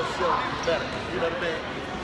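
Basketball bouncing on a hardwood gym floor, with people's voices talking in the background.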